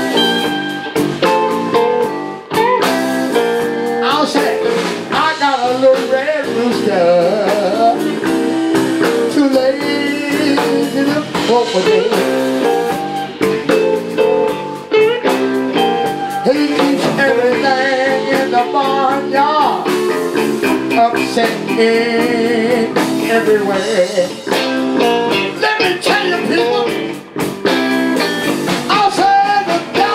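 Live blues band playing: electric guitars, bass and drum kit, with a man singing into a microphone.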